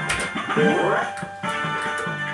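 Golden Dragon fruit machine's electronic sound effects: a click as a button is pressed, then a rising electronic sweep about half a second in, over the machine's steady tune.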